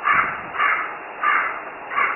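An animal calling repeatedly, a short call about every two-thirds of a second, four calls in all.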